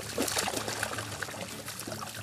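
Hooked pike thrashing and splashing at the water surface on the line, leaping partly clear of the water, in a series of irregular splashes.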